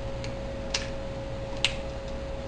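Sharp faint ticks, three in the space of two seconds, over a steady low hum, as a second egg is opened into an oiled frying pan that already holds one egg.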